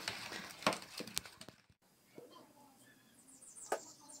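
A whisk beating thick lemon custard in an aluminium saucepan, its strokes knocking and scraping against the pan for about a second and a half before the sound cuts out. Faint handling sounds follow, with a single sharp knock near the end.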